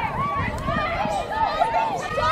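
Several high-pitched voices shouting and calling out over one another during live lacrosse play.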